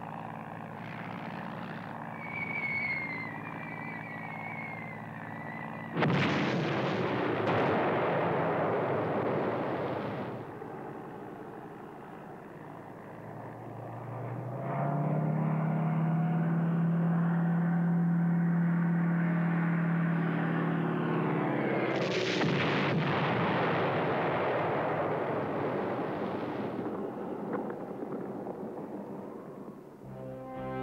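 Two heavy bomb explosions, one about six seconds in and one past the twenty-second mark, each starting suddenly and rumbling away over several seconds. Before the first, a steady aircraft drone with faint high whistles; between the two, a deep steady drone that swells louder.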